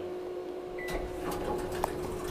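Schindler traction elevator car: a steady hum, with a short high beep about a second in and a few light clicks after it.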